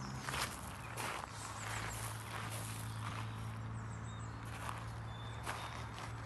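Several irregular crunching footsteps on gravel, over a steady low hum.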